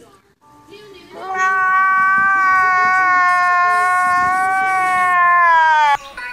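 A man's long, high-pitched wailing cry, starting about a second in, held at a steady pitch for nearly five seconds, then sliding downward just before it cuts off abruptly.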